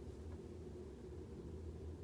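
Quiet room tone: a steady low hum with faint hiss, and no distinct events.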